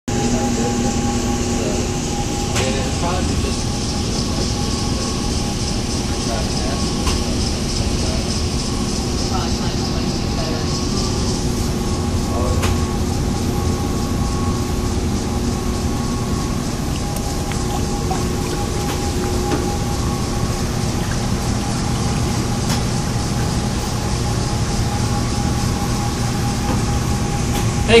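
A steady mechanical hum made of several steady tones over a constant noise bed, with faint indistinct voices and a few light clicks.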